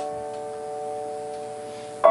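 A chord on a stage keyboard piano held and slowly fading, with no new notes struck. A short click comes as it begins.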